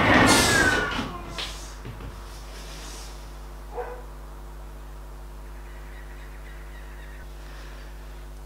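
A cat screeching as it is attacked, with a loud falling cry in the first second and a couple of fainter sounds after, then only a steady low hum.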